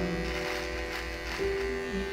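Electric hair trimmer buzzing steadily while trimming a mustache and beard.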